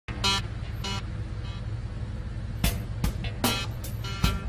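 A steady low car-engine rumble with two short pitched tones near the start. About two and a half seconds in, soundtrack music with a sharp percussive beat comes in over it.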